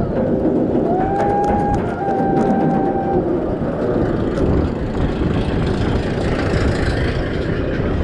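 A B&M wing coaster train climbing its chain lift hill, with a steady mechanical rumble and light clicking. A brief steady whine comes about a second in. Near the end the train crests the top and wind noise on the microphone rises.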